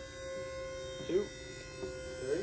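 Pull-test rig's motor running with a steady electric hum as a rope tied with an alpine butterfly knot is slowly loaded toward breaking.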